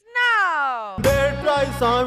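A long meow-like call sliding steadily down in pitch for about a second, followed by loud music with a heavy beat that starts abruptly about a second in.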